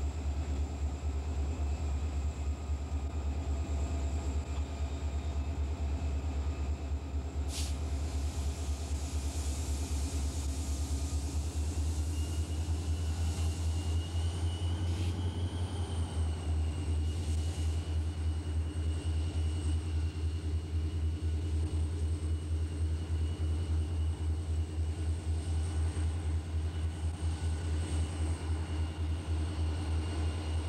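Soo Line diesel-electric locomotives rumbling steadily as they approach slowly at the head of a freight train. A faint high whine comes in about halfway through.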